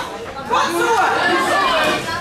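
Ringside chatter: several people talking and calling out over one another during a kickboxing bout.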